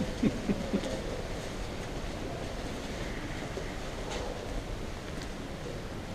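Steady low background noise of a large hall, with a few short, dull knocks during the first second.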